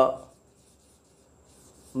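Marker pen scratching faintly on a whiteboard as words are handwritten.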